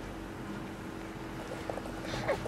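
Steady background room noise with a constant low hum, and a few faint soft ticks or rustles near the end.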